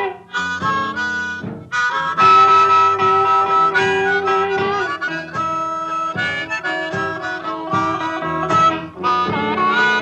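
Blues harmonica playing long held and bent notes over a plucked guitar accompaniment, in the instrumental intro of an old-style boogie-blues recording.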